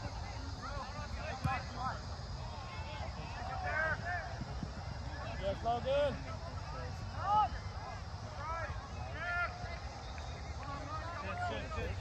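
Scattered shouts and calls from soccer players and coaches across an outdoor field, mostly distant, over a steady low rumble.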